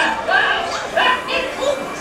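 Cartoon-style dog barks and yips from a ride soundtrack, several short high calls in quick succession.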